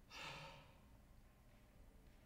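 A person sighs once, a short breathy exhale just after the start.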